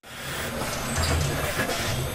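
Steady buzzing and whirring of production-floor machinery at an automated assembly cell, with a low hum underneath.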